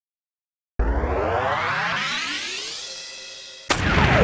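Synthesized intro sound effect: after a moment of silence, a rising sweep that fades away over about three seconds, then a sudden hit with a steeply falling tone near the end.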